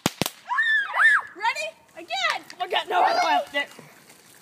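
Two sharp pops a fraction of a second apart, like small firecrackers, followed by excited shouting and high-pitched voices.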